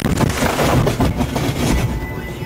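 A sudden loud crash as debris strikes a police car's windshield and shatters the glass, followed by about two seconds of loud crackling and low rumbling noise inside the car that eases off near the end.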